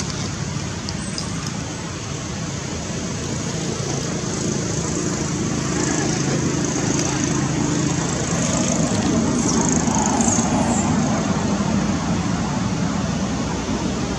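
Steady outdoor background noise with a low rumble like distant road traffic, growing a little louder towards the middle.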